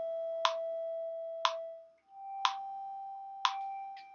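Metronome clicking once a second, at 60 beats per minute, over a steady drone tone. About two seconds in, the drone stops and comes back at a higher pitch, on G.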